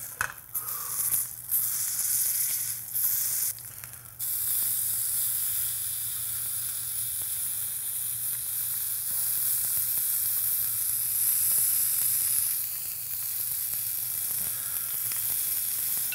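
A New York strip steak sizzling in hot fat in a stainless steel skillet as its edge is held down with tongs to sear. The sizzle cuts out and comes back a few times in the first four seconds, then runs steadily.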